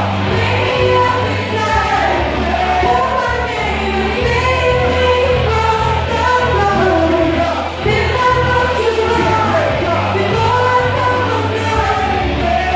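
Amplified singing into handheld microphones over loud backing music with a steady bass line.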